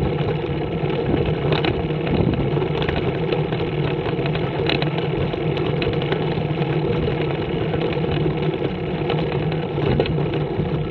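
Scorpion trike's engine running steadily while riding along a road, a constant low hum under an even rushing noise.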